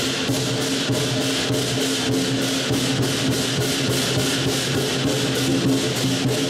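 Lion dance percussion: a big drum beating a steady rhythm of about three strokes a second, with clashing cymbals and a ringing gong.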